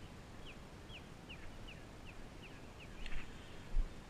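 A songbird calling: a steady run of about eight short, high, down-slurred notes, roughly three a second, that stops about three seconds in. Near the end a sharp knock and then a low thump.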